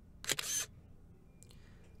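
A camera shutter sound from a phone taking a photo: one short, sharp click about a quarter second in, with a much fainter click near the end.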